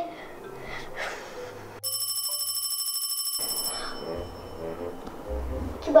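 A telephone ringing: one rapidly trilling ring, about a second and a half long, starting about two seconds in.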